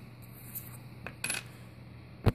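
A nickel coin giving a single light metallic clink a little past a second in, after a fainter tick, over a steady low hum.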